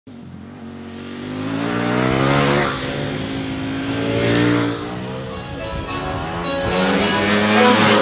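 Ducati Panigale V4 sportbike's V4 engine passing by as it is ridden through corners, revving up and dropping back, loudest about two and four seconds in.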